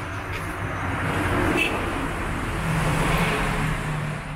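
Road traffic: motor vehicles passing, their noise swelling about a second in and again near three seconds, with a steady low engine hum in the second half.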